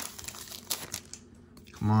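Foil booster-pack wrapper crinkling as it is pulled open and the cards are slid out: a short run of light crackles in the first second or so, then it goes quiet.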